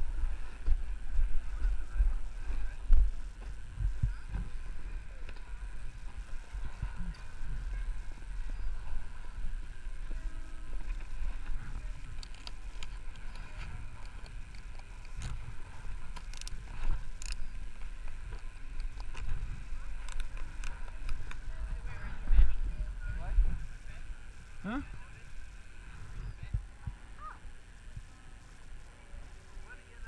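A snowboard sliding and scraping over packed snow during a downhill run, with uneven low rumbling from wind buffeting an action camera's microphone.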